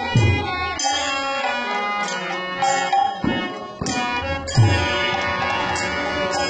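Kirtan ensemble playing: harmonium and violin hold sustained melody lines over strokes of a khol barrel drum, with bright metallic strikes about once a second.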